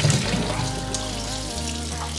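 Kitchen tap running into a stainless steel pot of water in the sink while a hand swishes and rubs a zucchini and a carrot in the water. Soft background music plays underneath.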